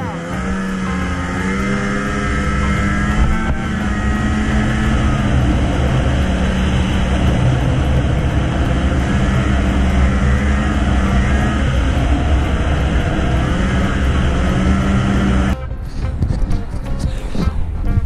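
Arctic Cat ZR RR 6000 snowmobile's two-stroke engine running hard at trail speed, with track and wind noise, its pitch climbing slightly at first and then holding steady. It cuts off abruptly near the end.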